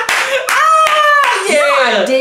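Hands clapping a few times, sharp and spaced out, under loud laughter with one long high-pitched squeal in the middle.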